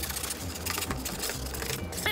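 Utility knife sawing through a cardboard poster tube: a rapid, scratchy rasping of the blade tearing through the cardboard wall.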